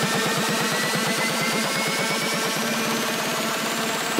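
Electronic dance music build-up: a dense noise riser that climbs steadily in pitch over a rapid, even drum roll.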